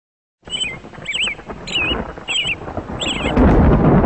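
Intro sound effects: a bird chirping in short, evenly spaced calls, about five of them, over a low thunder-like rumble. The rumble swells louder near the end.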